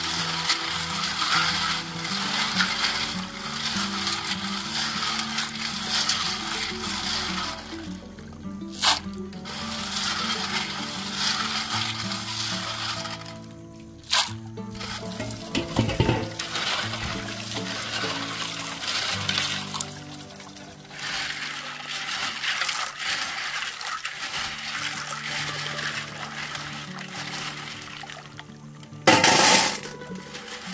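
Water sloshing and splashing as live snails are stirred and rinsed by hand in basins of water, with a few sharp knocks, over steady background music.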